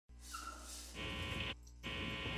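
Faint electronic intro sound effect, a low hum with static-like hiss that turns buzzier about a second in, cuts out abruptly for a moment and then resumes.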